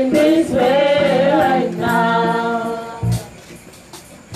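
Several voices singing a worship song together, with no clear instruments; the singing fades out about three seconds in, followed by a short low thump.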